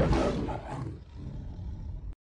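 A big-cat roar sound effect fading away over about a second, leaving a faint tail that cuts off at the end.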